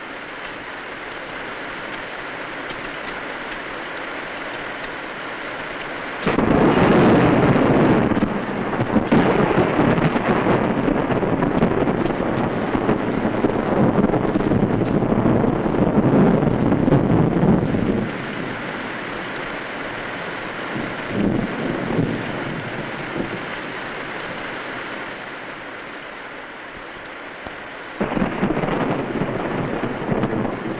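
Heavy rain falling steadily, with a long loud rolling rumble from about six seconds in until about eighteen seconds, and another rumble starting near the end.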